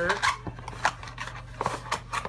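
Plastic clicks and rustles from a Play-Doh play set and its small dough cans being handled, with about five sharp clicks spread through.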